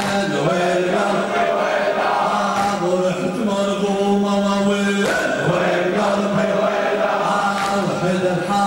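Men chanting a Shia Muharram mourning lament (latmiya) in long held notes. A sharp slap comes roughly every two and a half seconds as mourners beat their chests.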